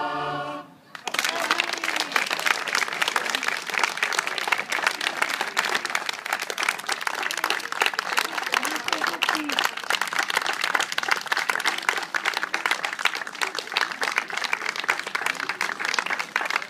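A choir holds its final chord and stops within the first second. Then audience applause, steady to the end, with a few voices among the clapping.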